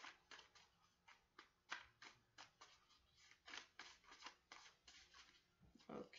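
Faint hand-shuffling of a deck of cards: a string of soft, irregular card clicks and slaps, about three a second.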